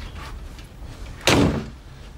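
A front door shutting with a single loud bang about a second in.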